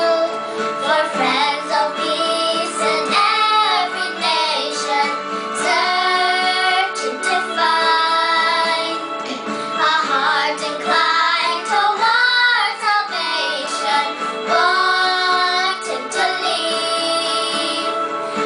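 Two young girls singing a hymn together in phrases of a few seconds, over a steady instrumental accompaniment of held notes.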